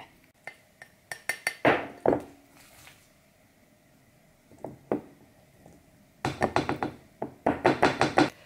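A glass mug and a steel pot clinking and knocking as cooked rice is scooped with a rice paddle and measured out. There are several sharp clinks at first, a quiet pause with a couple of knocks, then a quick run of clinks near the end.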